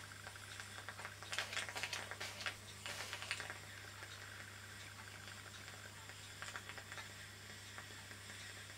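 Small metal parts of a Märklin toy steam donkey engine clicking and rattling under the fingers as a fitting is adjusted, in a cluster of sharp clicks during the first few seconds, over a steady low hum and faint hiss.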